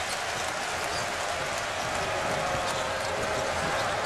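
Arena crowd cheering steadily, the home crowd reacting to a South Carolina basket in a college basketball game.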